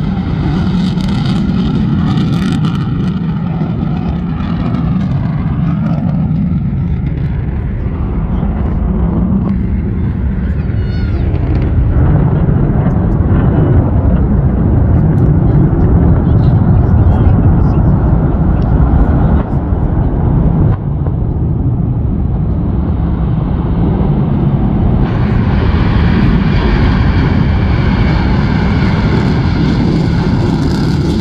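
A B-1B Lancer bomber's four afterburning turbofan engines running at high power during a takeoff run and low passes: a loud, continuous jet rumble that swells to its loudest in the middle and breaks off abruptly at a couple of cuts.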